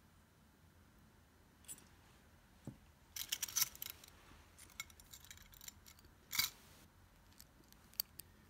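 Small metal jewelry pieces, earrings and chain, clinking and jingling as they are handled by hand: a few light clicks, a cluster of jingles about three seconds in, and a sharper clink a little past six seconds.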